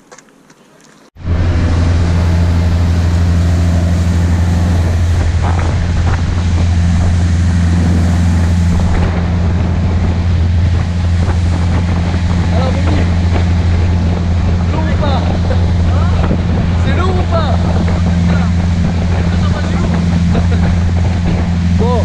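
Motorboat engine running steadily at speed, a loud low hum, with wind buffeting the microphone and water rushing past the hull. It cuts in abruptly about a second in after a quiet start.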